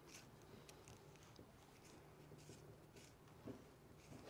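Near silence, with faint scraping as a brass SWA cable gland is twisted by hand onto the splayed steel wire armour until it starts to bite, and a faint click about three and a half seconds in.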